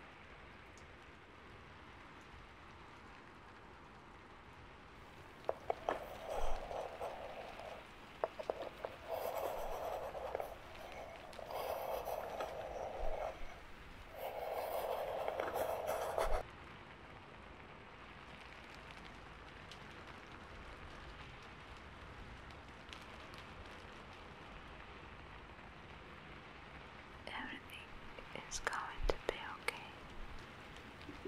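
A woman whispering softly in four short phrases, close to the microphone, typical of a repeated reassurance such as "you're okay". A few faint clicks follow near the end.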